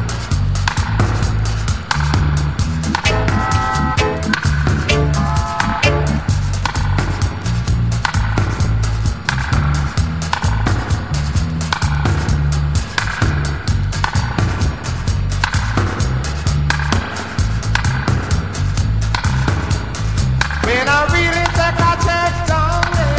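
Roots reggae instrumental passage with no singing: a heavy, repeating bass line under a steady drum beat with crisp hi-hat strokes, and short pitched instrumental phrases a few seconds in. Near the end a wavering pitched line enters over the rhythm.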